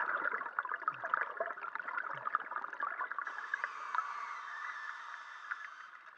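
Underwater bubbling and crackling from a diver's scuba regulator. A steady hiss switches on about three seconds in and stops near the end.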